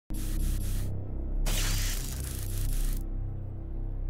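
Film score with low sustained notes, overlaid with two bursts of hiss: a short one at the start and a longer one of about a second and a half in the middle.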